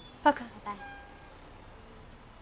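A woman's voice saying a short, high-pitched goodbye, "Poka", with a second brief syllable just after. Then there is only faint, even street background.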